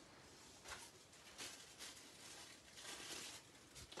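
Near silence with a few faint, brief rustles of torn tissue paper being handled.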